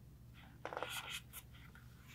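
Faint crackly rustle of a paper picture book being handled, a quick run of small scrapes lasting under a second about halfway through, over a low steady room hum.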